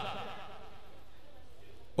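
Quiet, steady film-soundtrack background with no distinct event, as a voice fades out at the very start.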